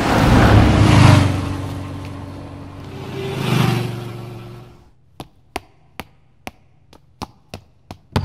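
A motor vehicle passes close by, its engine and tyre noise swelling up and fading, with a second, smaller swell a couple of seconds later. From about five seconds in come quick, sharp footsteps, about two or three a second, of someone running up a staircase.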